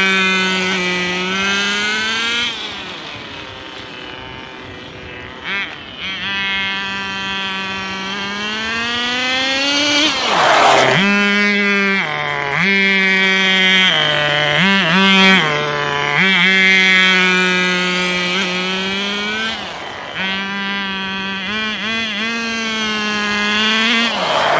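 Tamiya TNS-B nitro RC car's small glow engine, not yet fully run in or tuned, running and revving up and down as the car is driven. It fades with distance for a few seconds, gives a quick series of rev blips in the middle, and passes close twice, about ten seconds in and at the very end, each time with a sudden drop in pitch.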